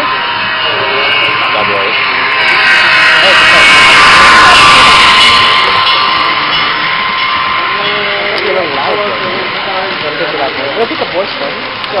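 Model freight train running past close by on layout track, its wheels and motor making a steady whining hiss that swells to its loudest about four to five seconds in and then eases off, with people talking in the background.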